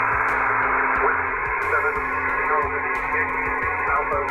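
Ham radio transceiver receiving on 10-metre upper sideband (28.400 MHz): steady receiver hiss and static through its speaker, with a weak voice, the airborne station answering, coming faintly through the noise from about a second and a half in.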